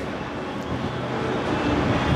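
Steady rushing background noise with a low rumble, with no distinct events.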